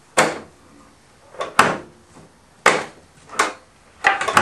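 Folding steel table legs being folded flat onto a plywood tabletop and 2x4 blocks, knocking against the wood: about five sharp clacks spread over a few seconds.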